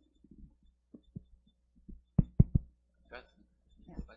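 Microphone handling noise: a few faint clicks, then three dull thumps in quick succession about two seconds in, followed by a brief trace of voice.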